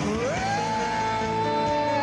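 Rock ballad band music from a live performance: a single note slides up near the start and is then held long and steady over the band.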